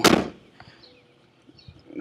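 A short rush of noise on the microphone right at the start, fading within a moment, then only faint background.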